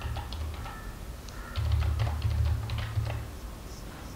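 Typing on a computer keyboard: irregular runs of quick key clicks as code is entered. A low steady hum swells under the clicks in the middle and is the loudest part.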